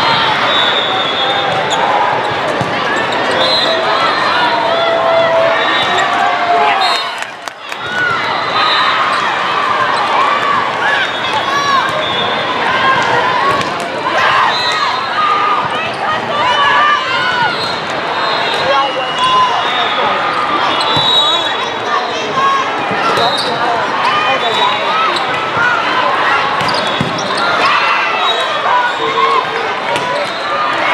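Live sound of volleyball play in a large tournament hall: volleyballs being struck and bouncing, over many overlapping, indistinct voices from players and spectators. The sound dips briefly about seven seconds in.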